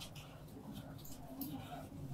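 Felt whiteboard eraser wiping a glass whiteboard: several faint, short rubbing strokes.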